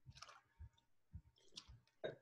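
Near silence with four or five faint, short clicks.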